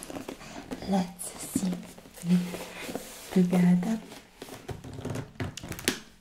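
A woman's voice making several short vocal sounds, each held on one pitch, with light clicks and rustles from a box being handled and a few sharp taps near the end.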